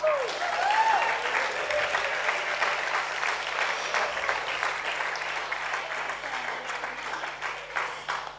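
Audience applauding for a graduate whose name has just been called, with a few cheering shouts near the start; the clapping slowly fades toward the end.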